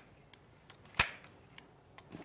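A single sharp click about a second in, with a few faint ticks around it: the trigger of a 400 ml two-part urethane dispensing gun being pumped to inject glue into an oar sleeve.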